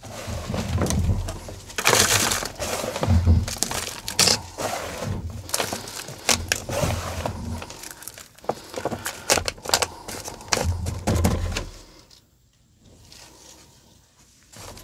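Hands scooping moist potting soil, dropping it into a small plastic pot and pressing it down around a cutting: gritty crumbling and rustling with dull knocks on the pot and bench, stopping about two seconds before the end.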